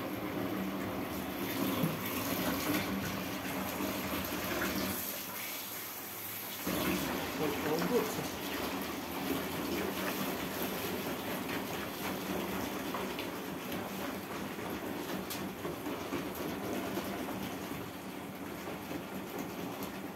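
A gloved hand swishing and sloshing soapy water in a plastic basin, whipping up suds, with a continuous watery noise.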